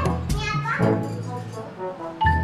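Young children's voices over background music with a steady bass line.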